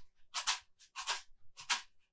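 Homemade shaker made from an old plastic hot chocolate container filled with paper clips, shaken in an even rhythm: three rattling shakes of metal clips inside the tub.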